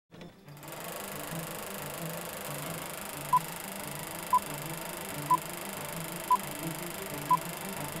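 Film-leader countdown: a short, high beep once a second, five times from about three seconds in. Under it runs a steady mechanical whirr and clatter like a film projector running.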